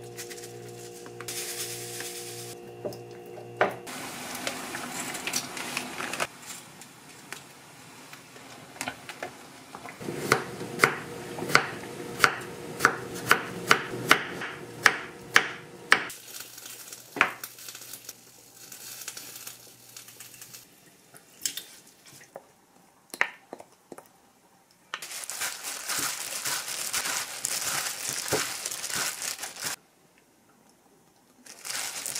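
Kitchen knife slicing cucumber on a wooden cutting board: a regular run of sharp cuts about two a second, then scattered cuts. Near the end there is a steady hiss for about five seconds that stops suddenly.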